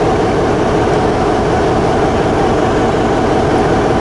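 Steady machinery drone aboard a research ship: a constant hum under an even rushing noise, unchanging throughout.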